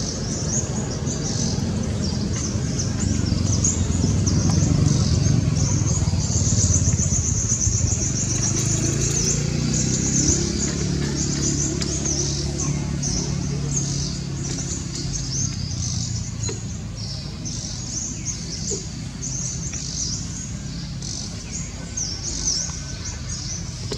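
Birds chirping repeatedly in short high calls, with a fast high trill about seven seconds in. A steady low rumble runs underneath.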